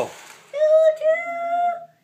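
A young child imitating a train whistle with his voice: two held high notes, the second a little longer.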